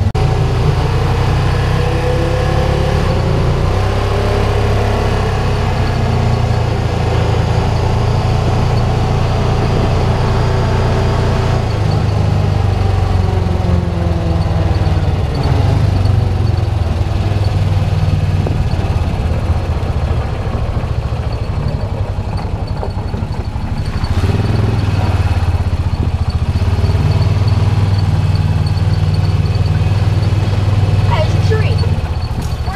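Honda Pioneer 700 side-by-side's single-cylinder engine running while driving, its pitch rising and falling with speed. It eases off for a few seconds about three-quarters of the way through, then picks up again.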